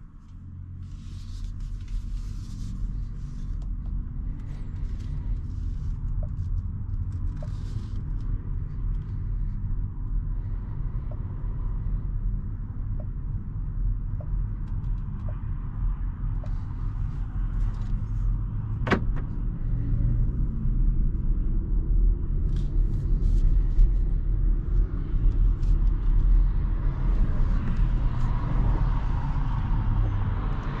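Low road and tyre rumble inside the cabin of a 2023 BMW iX1 electric SUV on the move, growing louder toward the end as the car picks up speed. A faint regular tick about once a second runs for several seconds in the first half, and there is a single sharp click about two-thirds of the way through.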